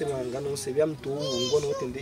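Speech: a man's voice talking, with some syllables drawn out.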